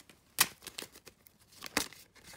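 A deck of playing cards being shuffled by hand: a sharp card snap about half a second in and another near the end, with lighter clicks of cards between.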